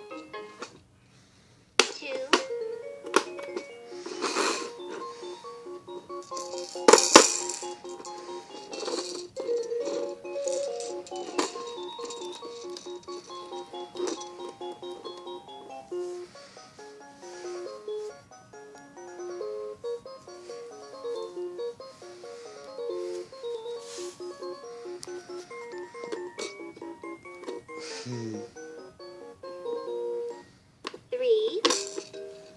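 Baby Einstein Count & Compose toy piano playing an electronic melody note by note, with sharp clicks and knocks from the plastic toy being handled, the loudest about seven seconds in. It starts after a second of near silence.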